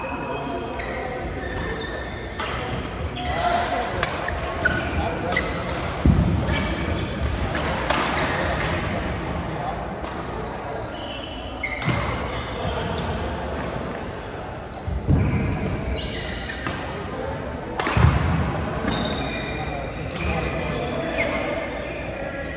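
Badminton rackets striking shuttlecocks on several courts in a reverberant sports hall, a quick run of sharp hits with heavier thuds now and then, mixed with short high shoe squeaks on the court floor and players' indistinct voices.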